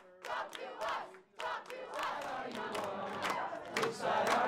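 A crowd of protesters chanting and shouting together, thin at first and fuller from about a second and a half in.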